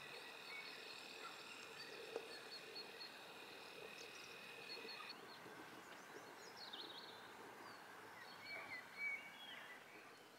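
Faint countryside ambience with a steady high whine that stops about halfway through, then a few short bird chirps in the second half.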